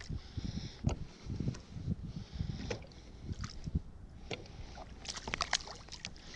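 Sea water sloshing around a kayak, with wind buffeting the camera microphone, and scattered sharp splashes and knocks as a line is hand-hauled. There is a quick cluster of splashes about five seconds in, as a fish is brought thrashing to the surface.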